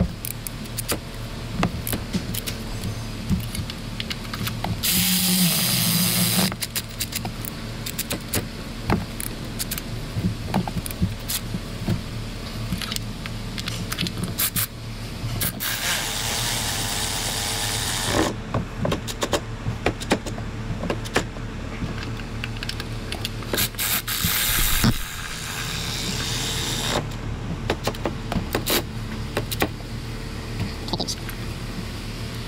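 Cordless electric ratchet running in three short bursts of about two to three seconds each, driving spark plugs in a V8's cylinder heads. Between the bursts come the clicks of a hand ratchet and sockets.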